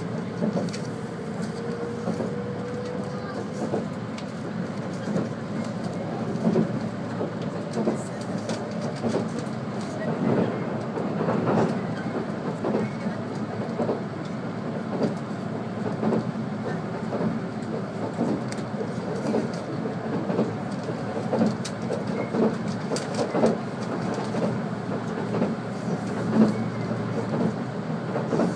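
Inside a moving 485 series electric train: steady rolling and running noise of the car, with repeated clacks as the wheels pass over rail joints.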